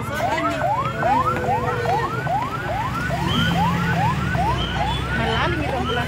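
Ambulance siren sounding in a fast yelp: short rising wails repeating about two to three times a second, over a low rumble.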